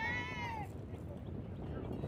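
A child's high-pitched, drawn-out call that ends a little over half a second in, then low outdoor background.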